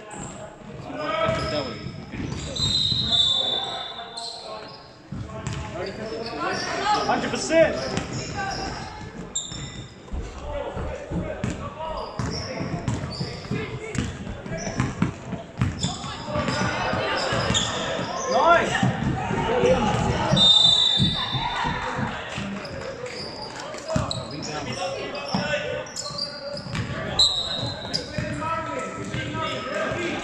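Basketball game in a gymnasium: the ball bouncing on the hardwood court, a few short high squeaks of sneakers, and players and spectators calling out indistinctly, all echoing in the large hall.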